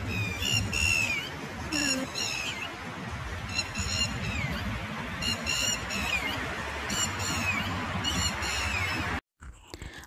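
A bird calling over and over in short chirping notes, often in quick groups of two or three, some sliding down in pitch, over a steady low background rumble. The sound cuts off abruptly near the end.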